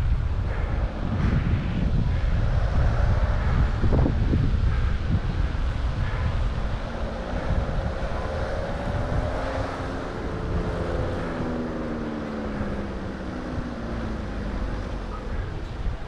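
Wind buffeting a cyclist's helmet-camera microphone while riding, a steady low rumble. In the middle a faint hum with several pitches slowly rises and then falls over several seconds.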